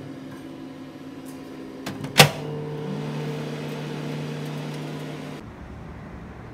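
A sharp click about two seconds in, then a microwave oven running with a steady hum that cuts off suddenly shortly before the end.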